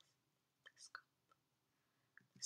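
Near silence: room tone, with a few faint, brief whisper-like mouth sounds about a second in.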